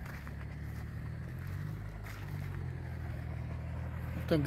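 A steady low engine hum, like a motor vehicle running nearby, holding even with a slight swell in the middle.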